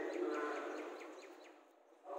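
Thai Buddhist chanting in Pali, a group of voices holding long steady notes, fading out into a brief pause near the end. A run of quick, high chirps sounds over it in the first part.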